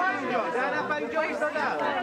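Several people talking over one another: overlapping crowd chatter.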